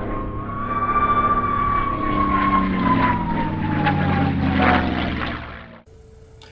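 Propeller-driven aircraft engine passing by, its pitch falling slowly as it goes, then cut off abruptly just before the end.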